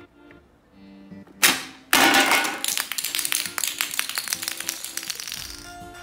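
Plastic pop-up barrel toy firing with a sharp snap as its spring releases. A moment later comes a dense run of quick plastic clicks and rattles that fades over a few seconds, as the launched Minion figures bounce and clatter on a hard floor, over plucked background music.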